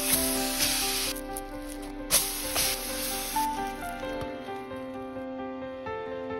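Batter-soaked slice of sourdough French toast sizzling as it goes into a hot frying pan. The sizzle comes in two spells and stops about three and a half seconds in. Soft background music plays throughout.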